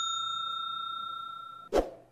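A single metallic, bell-like ring that carries on and slowly fades. It is cut off abruptly near the end by a short dull thump.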